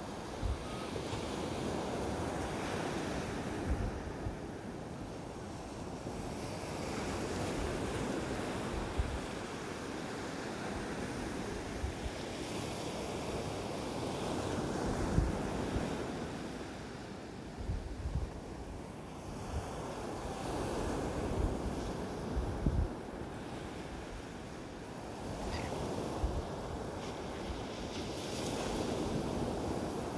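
Ocean waves breaking on a beach, the surf rising and falling in swells every several seconds. Wind buffets the microphone with low thumps.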